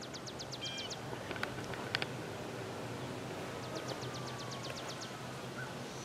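Quiet outdoor ambience with a faint steady low hum, in which a small bird gives a rapid high trill twice, once near the start and again past the middle.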